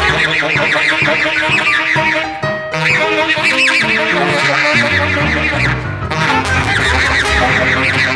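Contemporary jazz octet playing a dense passage: saxophones, clarinets and brass in fast, overlapping lines, with low double-bass notes stepping underneath, fuller in the second half.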